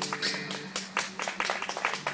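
The last guitar chord ringing out and fading, while a few people start clapping in separate, uneven claps that grow busier after about half a second.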